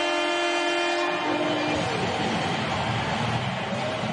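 Hockey arena goal horn sounding one long, steady note that cuts off about a second in, leaving steady arena noise.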